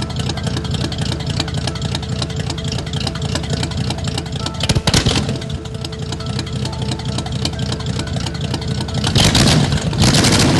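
A car engine running with a steady low rumble, surging louder briefly about halfway through and again near the end.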